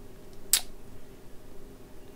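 A single short, sharp click about half a second in, over a faint steady hum of powered bench equipment.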